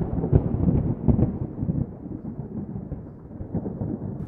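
A deep, thunder-like rumbling sound effect that opens with a loud hit and dies away over the next few seconds, laid under a title card.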